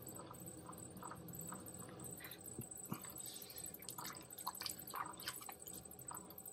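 Faint wet squelches and small irregular clicks of hands working soft, wet clay on a spinning potter's wheel, over a faint steady hum.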